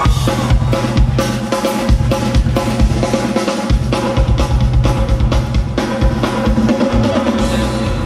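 Live band kicking into a song together: a full drum kit with kick and snare driving a steady beat under heavy bass and guitar, played loud through a concert PA.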